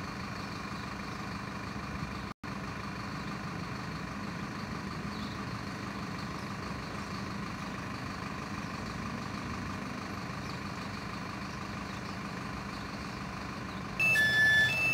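Diesel engine of a parked intercity coach idling, a steady low drone with no revving, broken by a momentary gap about two seconds in.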